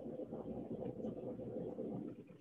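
Steady rumbling background noise with a humming band in it, fading out just after the end.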